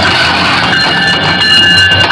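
Diesel locomotive and its passenger coaches passing close by on the track: a loud, steady rush of wheels on rails and running gear as the engine goes by and the coaches follow. Thin high steady tones come in a little under a second in.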